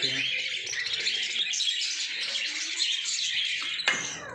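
A flock of budgerigars chattering and chirping continuously in the aviary, with a sharp click just before the end.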